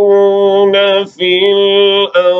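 A man's voice chanting Quranic recitation (tilawat) in a melodic style, holding two long steady notes with a short breath between them about a second in.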